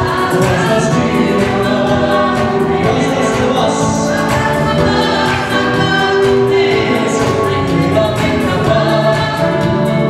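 Live gospel praise song: a small group of voices singing into microphones, with electronic keyboard accompaniment, amplified through PA speakers.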